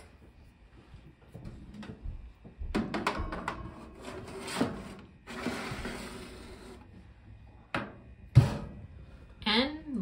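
A metal baking pan is slid onto the wire rack of a countertop oven, with knocks and a scraping slide, and then the oven's glass door shuts with a single sharp thump near the end.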